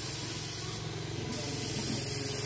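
Compressed air hissing through a dial-gauge tyre inflator held on a car tyre's valve as the tyre is set to its correct pressure. A shorter, sharper burst of hiss comes about a second in.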